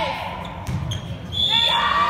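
Volleyball rally in a gymnasium: a high shout fades at the start and a volleyball is struck with a sharp smack. About one and a half seconds in, high-pitched shouts and cheers from players and spectators start up as the point is won, over the echoing hall.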